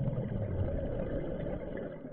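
Scuba diver's exhaled breath bubbling out of the regulator underwater: a rough, gurgling rush of bubbles that lasts about two seconds and dies away at the end.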